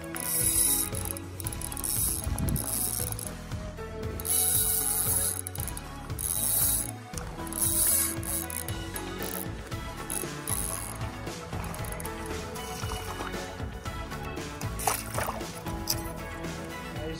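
Fishing reel being cranked in repeated short spells, a clicking, whirring winding sound as the lure is retrieved, over background music.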